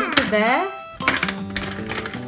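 A high voice exclaiming with a rising and falling pitch over background music, then a single sharp click about a second in.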